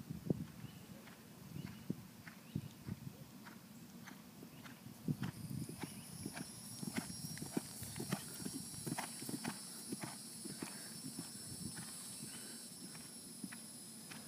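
A ridden horse's hooves on grass turf: a running series of dull thuds as it moves past close by. From about five seconds in a steady high-pitched buzz runs alongside.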